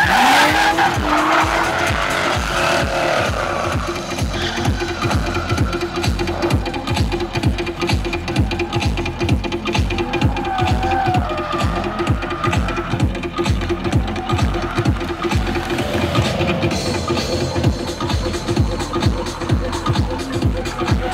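BMW E36 drift car with a straight-six M3 engine revving hard and its tyres squealing as it slides past, loudest at the start and fading as it moves away. Loud dance music with a steady beat runs underneath throughout.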